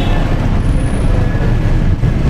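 Outdoor background noise: a steady low rumble with an even haze above it and no single clear source.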